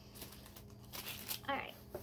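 Cardboard box and paper packaging being handled and opened, rustling and crinkling in several short bursts.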